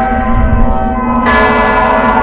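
A church bell tolling: one new stroke rings out a little over halfway through, while the earlier stroke's hum still hangs on.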